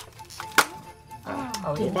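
A Christmas cracker pulled apart with a single sharp snap about half a second in.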